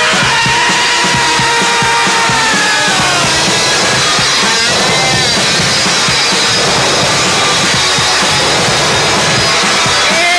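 Live punk rock band playing: a drum kit pounding a fast beat under electric guitar, with a held note that slides down about three seconds in.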